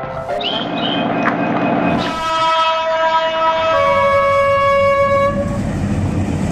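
Train running with its horn sounding: a long, steady multi-tone blast starts about two seconds in and holds for about three seconds over the rumble of the train.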